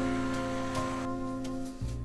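Background instrumental music with held, sustained notes.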